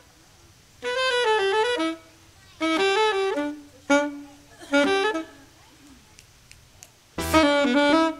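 A saxophone plays five short unaccompanied melodic phrases separated by pauses of about half a second to a second and a half. The last phrase starts about a second before the end.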